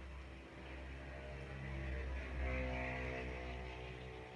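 A steady low hum, with a droning, engine-like sound that swells from about halfway through and fades again toward the end.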